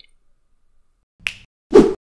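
A short, sharp snap just past a second in, then a louder, fuller pop near the end: the sound effects of an animated channel-logo outro.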